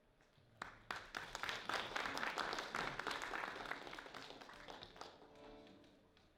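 Audience applauding for about four seconds after a piece ends, swelling quickly and then fading away. Near the end an accordion starts sounding held notes.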